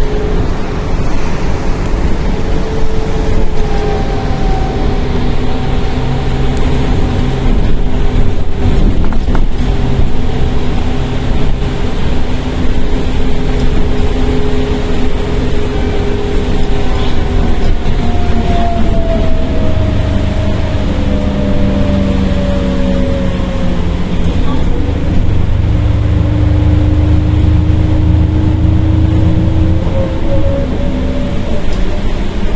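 Cabin sound of an Iveco Urbanway 18 articulated bus with a natural-gas (CNG) engine on the move: a steady engine and driveline whine over road rumble. Past the middle the whine falls in pitch over several seconds as the bus slows, then climbs again near the end as it pulls away.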